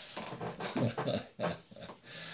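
A man laughing quietly to himself in a run of short, breathy bursts, softer than his speaking voice.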